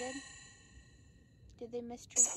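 Necrophonic ghost-box app on a phone playing short, voice-like fragments with heavy echo: one right at the start trails off into a long ringing tail, and another comes just before the end. The uploader captions these fragments as "it hurt".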